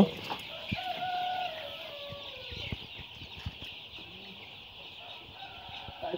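A flock of young Sonali hybrid chicks peeping in a continuous high chorus. A drawn-out lower call stands out from about one to two and a half seconds in.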